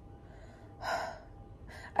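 A woman's single breathy gasp about a second in, drawn with her mouth open in rapture at remembering a dessert.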